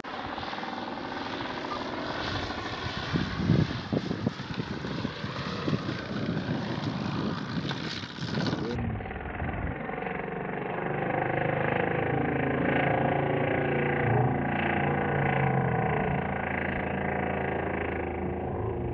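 Engine and 19x8 propeller of a radio-controlled 3DHS Extra 330LT model aerobatic plane running in flight. The engine tone becomes clear and steady about halfway through, its pitch wavering slightly as the plane flies past and overhead.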